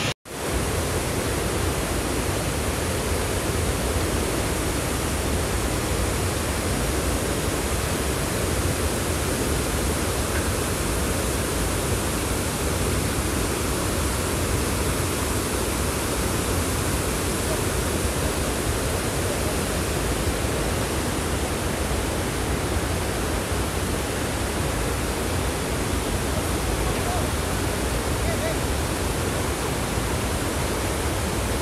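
Torrent of muddy floodwater released by a water burst at a hydroelectric project, rushing down a hillside in a steady, unbroken rush of noise. The sound cuts out for a moment just after the start.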